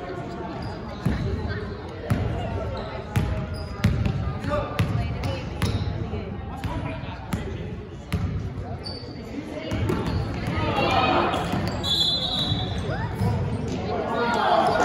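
Basketball bouncing on a hardwood gym floor, a dribble about once a second, echoing in a large gym. Indistinct voices grow louder near the end.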